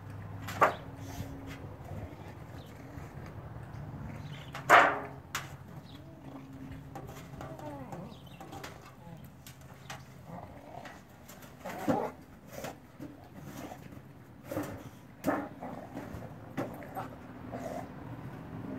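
A pan knocked and scraped about on dirt ground by an American bulldog nosing and pushing it: sharp, irregular clunks, about eight in all, the loudest about five seconds in.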